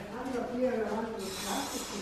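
Low, indistinct voices, with a brief hiss near the end.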